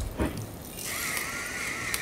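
A brief knock, then from about a second in a battery-powered gravity-sensor spice mill switches on, turned upside down, its small grinder motor running with a steady, slightly wavering whine.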